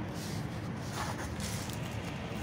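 Faint scuffing and rubbing of gloved hands sliding a short PVC sleeve along a PVC pipe, a few soft brushes over a steady background hiss.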